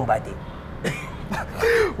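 A person's voice in a few short, quiet fragments with pauses between them, quieter than the surrounding talk.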